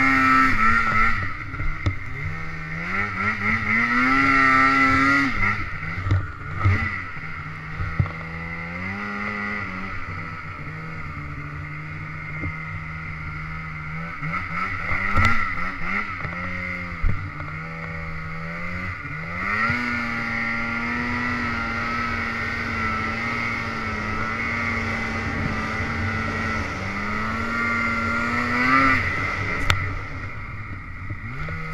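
Snowmobile engine pulling hard through deep powder while breaking trail. Its pitch climbs and drops several times as the throttle is opened and eased, with steadier stretches between. A few sharp knocks are heard partway through.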